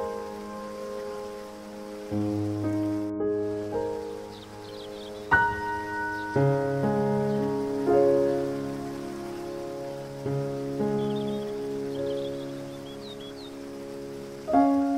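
Slow, soft piano music, single notes and chords struck every second or two and left to ring, over a steady hiss of rain-like water noise. A few faint high bird chirps come in twice, once near the start and once past the middle.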